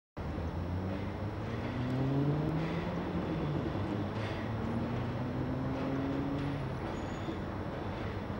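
Steady mechanical running noise from an engine or motor, with humming tones that slowly rise in pitch a couple of times and a few faint clicks.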